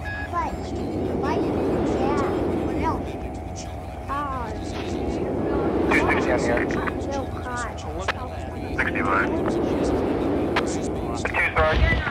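Experimental tape sound collage: a steady low droning rumble with short chirping, warbling pitch glides laid over it, thickest from about six seconds in.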